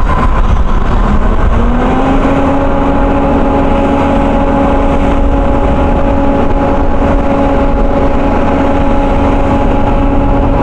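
Portable gasoline-engine hydraulic power unit for a Jaws of Life rescue tool running loud and steady. Its pitch rises briefly about a second and a half in, then holds.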